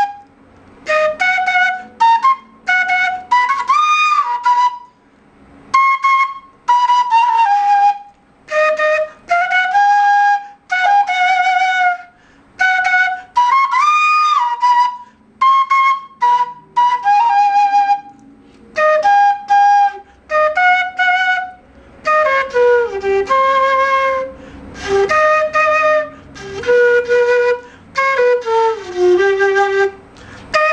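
Quena, the Andean notched cane flute, here one tuned in F, played solo: an Andean melody in short phrases of clear, breathy notes with brief breath pauses between them. Near the end the phrases step down to lower notes.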